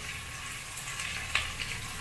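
Sliced onions frying in oil in a stainless steel pressure cooker, giving a steady, gentle sizzle as ginger-garlic paste is added.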